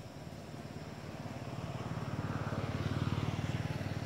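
Motor vehicle engine passing by: a low, fast-pulsing drone that grows louder to a peak about three seconds in, then starts to fade.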